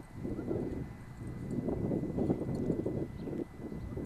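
Low, uneven rumble of a distant CSX freight train approaching, led by a GE Dash 8 wide-cab diesel locomotive, mixed with wind noise on the microphone.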